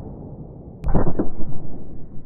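A harpoon from a Greener harpoon gun striking a flat-screen TV: the rumble of the blank-fired shot fades, then a sharp crack about a second in is followed by a few quick knocks as the harpoon punches into the screen. It is a low-powered hit, because the poorly fitting remake harpoon lost pressure and flew slowly.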